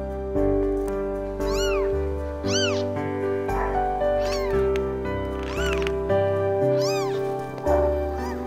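Newborn Siamese kittens mewing: about five short, high-pitched calls that rise and fall in pitch, roughly a second apart, over soft background music of slowly changing chords.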